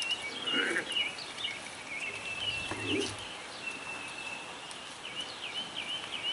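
Birds chirping and trilling in short repeated calls, over open-air background noise.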